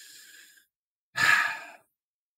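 A man's audible breath in a pause between sentences: a faint breath at the start, then a louder, short breath about a second in.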